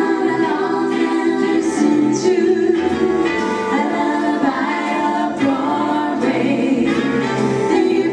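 A group of voices singing together in harmony over instrumental backing, a song from the 1940s.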